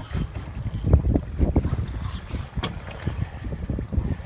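Wind buffeting the microphone on a small boat at sea, with choppy water slapping against the hull in a few louder low thumps about a second in.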